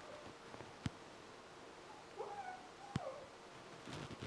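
Faint, distant handling sounds of a langoustine tail being threaded onto a short steel skewer, with two light clicks. A faint wavering high-pitched cry, about a second long, comes a little past the middle. The sound is distant and thin because the microphone has fallen down.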